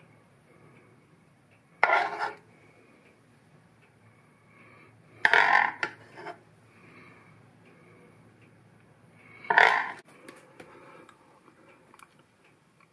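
A metal utensil scraping against a dish three times, each a short scrape of about half a second, as ginger and garlic butter is spooned over seared scallops.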